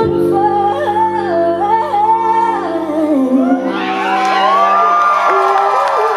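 Live female vocal held over a sustained band chord as a song closes, with the audience starting to whoop and cheer about two-thirds of the way through.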